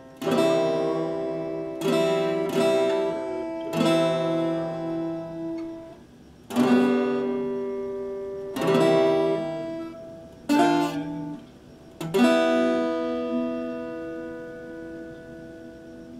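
Epiphone acoustic-electric guitar strummed slowly: about eight separate chords, each left to ring out before the next, the last one ringing for about four seconds.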